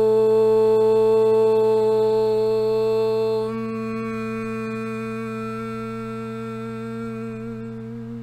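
A woman's voice toning: one long held note on a steady pitch, sung to clear self-doubt. Its tone shifts and grows quieter about three and a half seconds in, and it wavers as it trails off at the end.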